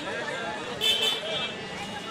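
Busy roadside street noise: people talking and traffic passing, with a short high-pitched vehicle horn about a second in.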